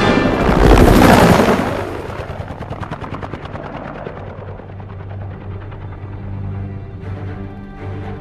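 Cinematic trailer sound effects: a loud blast about a second in, then a rapid run of gunfire-like cracks that fade away, over a low sustained orchestral drone.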